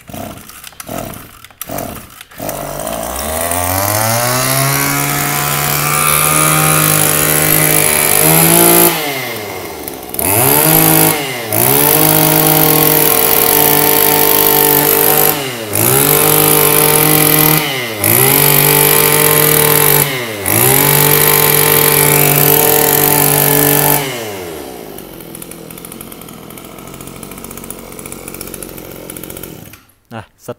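Small two-stroke brush cutter engine, a Mitsubishi TB23, pull-started with a few quick tugs. It catches about two seconds in, revs up, and is blipped to high revs several times with brief drops between. It settles back to idle for the last six seconds. It starts easily on a light pull.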